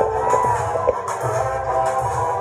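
Loud live Tigrinya dance music played through a PA, with a steady bass beat.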